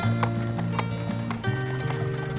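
Hooves of a pair of draft horses clip-clopping at a walk on a paved street, a few irregular clops a second, while they pull a carriage. Steady background music with sustained notes plays under them.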